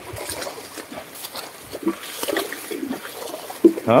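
A carabao pulling a wooden sled through knee-deep mud, with uneven squelching and splashing from its hooves and the sled.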